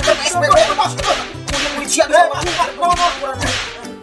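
A thin cane whipped repeatedly at people, about six swishing lashes half a second to a second apart, over background music with a low repeating bass line.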